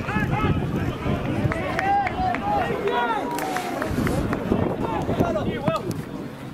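Footballers shouting to each other across the pitch during play: several men's voices in short, overlapping calls, none of them clear words.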